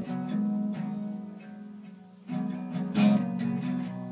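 Acoustic guitar being strummed: a chord rings and fades away for about two seconds, then new strummed chords come in just over two seconds in.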